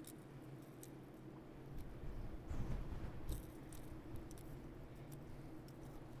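Faint metallic clicks and jingles of a jerkbait's treble hooks as they are worked out of a smallmouth bass's mouth by hand, over a steady low hum. A short stretch of louder low rumbling and handling noise comes about halfway through.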